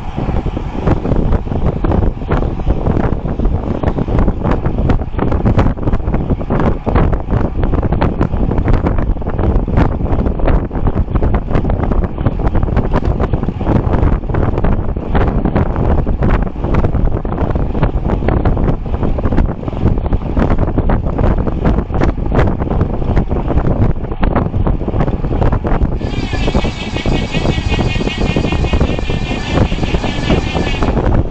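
Wind rushing over the microphone and tyre and road noise from a road bike riding fast. About four seconds from the end, a high, wavering buzz joins in and stops just before the end.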